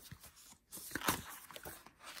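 Paper being handled: a few short rustles and soft taps as loose printed journal pages and a sketchbook are moved and turned.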